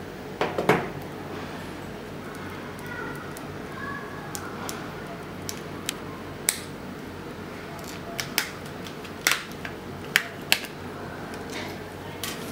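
Plastic back cover of a Samsung Galaxy phone being prised off by hand: a string of small, irregular clicks and snaps, the sharpest about half a second in and again in the second half.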